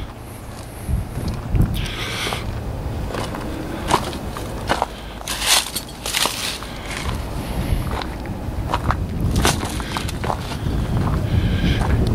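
Footsteps crunching over dry leaves and gravel, an irregular run of steps, with a low rumble underneath.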